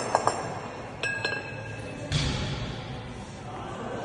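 Two 14 kg kettlebells knocking against each other during a long-cycle rep: a few sharp metallic clinks at the start and another clink with a brief ringing tone about a second in, then a dull thud about two seconds in.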